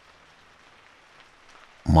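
Gentle, steady rain, heard as a faint, even hiss. A man's voice begins speaking just before the end.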